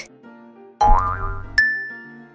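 Light background music with a cartoon sound effect about a second in: a short rising swoop, then a sharp bright ding that rings on and fades.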